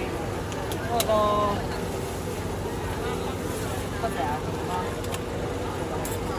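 Steady hum and background noise with brief snatches of distant voices, and a few light clicks of a takoyaki pick against the griddle.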